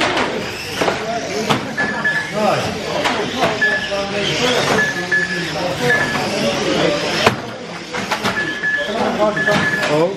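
Steady hubbub of voices in a hall as electric radio-controlled cars race on a carpet track. Short high electronic beeps repeat every second or so, with a few sharp knocks, the loudest about seven seconds in.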